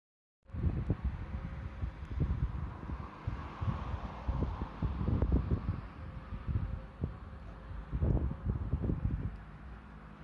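Wind buffeting the microphone in irregular low gusts, starting abruptly about half a second in, over a faint steady outdoor hiss.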